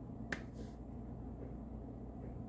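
A single sharp click about a third of a second in, followed by a fainter brief high-pitched brush of sound, over a steady low hum.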